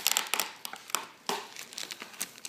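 Plastic bag crinkling and cardboard scraping as a bagged box is slid out of its cardboard outer sleeve, in a run of irregular sharp crackles, loudest at the start.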